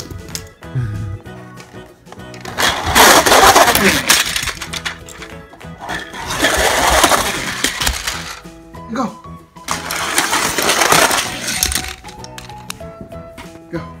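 Background music with three loud bursts of clattering, toy cars rattling down a plastic slide.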